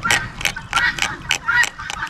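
Tip of a fillet knife scraping the bloodline out of a small bream's rib cage, ticking against the thin ribs in quick irregular clicks, about four a second.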